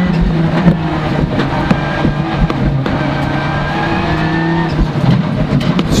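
Skoda World Rally Car's turbocharged four-cylinder engine running hard at fairly steady revs, heard from inside the cabin, with a change in engine pitch about five seconds in.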